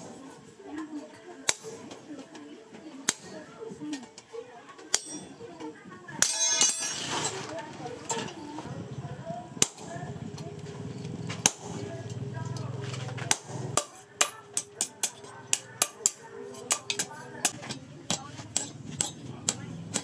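Hammer blows on a steel motorcycle brake disc rotor on the anvil: single ringing strikes a second or two apart at first, then a quick run of strikes, about two or three a second, in the second half. A brief rushing noise comes about six seconds in.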